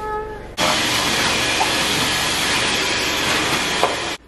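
Dyson V11 cordless stick vacuum cleaner running on the floor: a loud, even whooshing hiss that starts suddenly about half a second in and holds steady.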